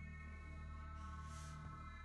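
Quiet, sustained ambient background score: a steady low drone under a cluster of held high tones, with a brief soft hiss about halfway through.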